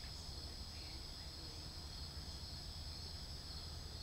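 Steady, high-pitched chorus of night insects, unbroken throughout, with a faint low rumble underneath.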